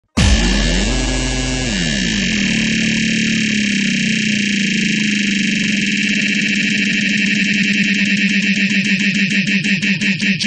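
Harsh, noisy electronic synthesizer intro: a dense drone starts abruptly, with low tones sliding apart and back together in the first couple of seconds, then breaks into a pulsing stutter that grows to about four pulses a second near the end.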